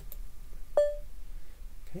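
A single short electronic beep from the computer, a tone that starts sharply about a second in and fades within about a third of a second: Geany's alert that compilation has finished. A faint click comes just before it.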